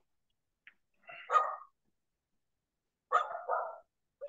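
A dog barking three times over a video-call audio line: one bark about a second in, then two in quick succession near the end.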